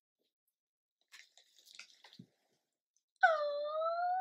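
Faint rustling and handling noises, then a loud, drawn-out high-pitched "ooh" from a woman's voice near the end, dipping and then slowly rising in pitch over about a second.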